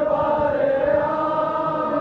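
Many men's voices chanting a Balti noha, a Shia mourning lament, together and holding one long steady note.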